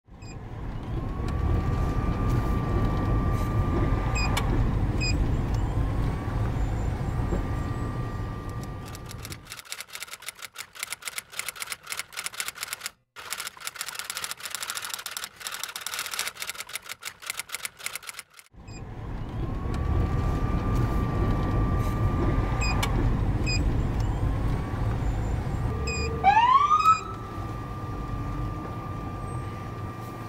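Vehicle rumble with a high tone that rises and then holds for a few seconds, heard twice. The rumble then drops out for about nine seconds of rapid typewriter-like clicking. The rumble returns with the same tone, and a short, loud rising siren yelp comes a few seconds before the end.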